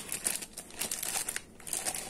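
Clear plastic packaging bag crinkling irregularly as hands handle the plastic cup sealed inside it.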